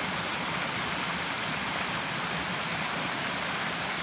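Small woodland stream tumbling over rocks, a steady, even rush of water.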